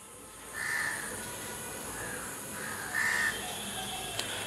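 Birds calling: two harsh calls, about half a second in and again near three seconds, with fainter calls between them, over a steady faint hiss.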